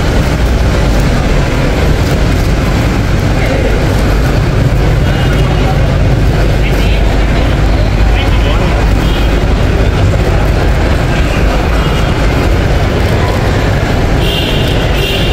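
Busy airport terminal ambience: a steady, loud low rumble with indistinct voices of people around.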